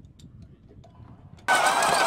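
A faint low rumble with scattered light clicks, then about one and a half seconds in, a small robotic ground vehicle's motor is heard running loud and steady with a high whine.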